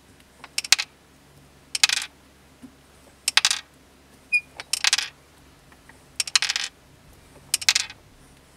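Jeweller's hand-cranked rolling mill being worked to roll a small gold bar: six short bursts of rapid metallic clicking, about one every one and a half seconds.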